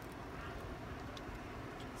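Quiet outdoor background: a steady low hiss with a few faint, brief ticks.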